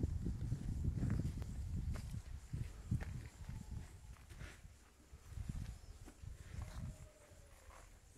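Footsteps on dirt ground from the person walking with the phone, uneven low thumps with some rumble on the microphone, loudest in the first three seconds and softer later.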